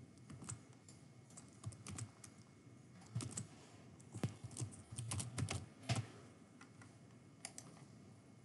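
Computer keyboard typing: a few scattered keystrokes at first, then a quick run of keys about three to six seconds in, with a last couple of taps near the end.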